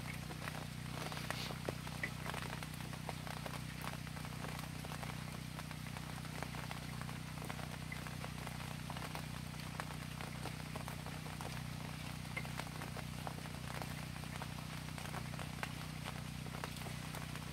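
Steady light rain falling, with scattered drips and small taps, over a steady low hum.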